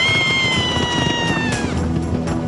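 A child's high-pitched scream, held for about a second and a half while its pitch slowly falls, then breaking off; a couple of sharp knocks follow near the end.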